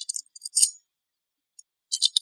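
Light metallic clicks and clinks from a GEnx oil-tank fill cap being handled, its latch lever and wire lanyard clinking. A few short clinks come near the start and again near the end, with silence between.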